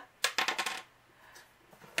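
A quick clatter of small hard objects clicking together, about half a dozen sharp clicks in well under a second, then only faint room sound.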